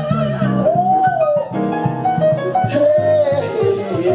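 Live jazz trio: a singer's voice carrying a melody in long, arching notes over piano and bass accompaniment.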